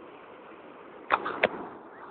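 Three sharp clicks in quick succession, a little over a second in, over a steady background rush.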